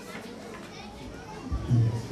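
Faint background voices, with a child's voice among them, and then a man's voice coming in loud near the end.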